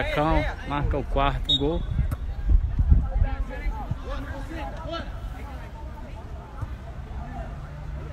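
Voices shouting on an outdoor football pitch, loud for the first couple of seconds and then fainter, with a low rumbling on the microphone peaking about three seconds in.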